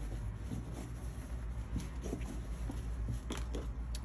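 Hands smoothing and handling a lightweight dotted fabric garment on a cutting mat: faint fabric rustling over a steady low hum, with a few soft taps about three seconds in.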